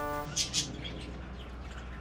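Birds chirping a few times in short high calls, over a low steady hum.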